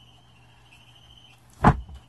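A single heavy thump about a second and a half in as the plywood platform of a gas-strut RV bed lift comes down shut onto the bed frame.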